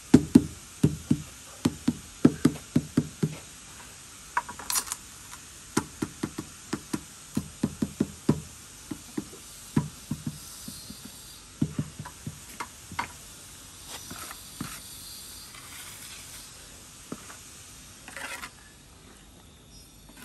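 Repeated dull knocks of a ceramic wall tile being tapped down into its mortar bed on a concrete wall, two or three taps a second for most of the first thirteen seconds, then only a few softer sounds.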